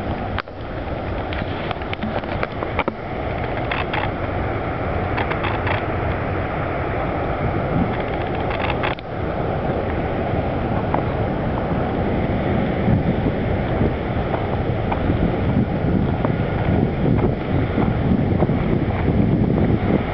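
Wind buffeting the microphone over the steady rush of river rapids, the noise swelling and easing unevenly and growing louder toward the end.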